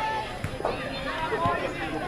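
Children's voices calling and shouting across a football pitch, with a few short knocks mixed in.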